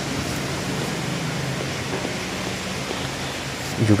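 Steady background hiss with a faint low hum underneath and no speech.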